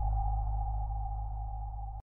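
Synthesized intro sound effect dying away: one steady mid-pitched tone held over a deep low drone, fading throughout and then cutting off suddenly at the end.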